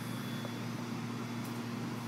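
Steady low mechanical hum carrying one constant tone, like an air-conditioning unit or an idling vehicle.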